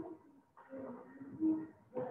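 Low, drawn-out cooing bird calls in the background, the strongest about one and a half seconds in.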